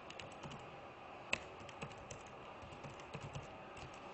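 Computer keyboard keys being typed as a login username and password are entered: a quiet run of light, irregular key clicks, with one sharper keystroke just over a second in.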